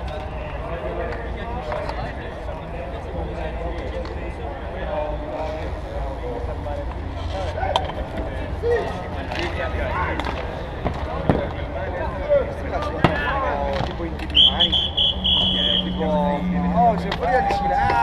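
Bike polo play on an outdoor hardcourt: players shouting and calling over a steady low rumble, with several sharp knocks of mallets striking the ball. A brief high steady tone comes about three quarters of the way through.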